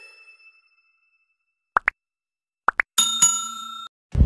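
Animation sound effects of a subscribe-button graphic: two pairs of quick rising pops, then a bell-like ding about three seconds in that rings for under a second and cuts off.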